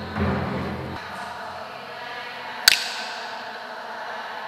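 A congregation's low chanted prayer trails off in the church's echo, and then a single sharp wooden clap of a hand clapper sounds about two and a half seconds in, ringing briefly. This is the Holy Week signal between stations of the Passion. Faint chanting voices begin again near the end.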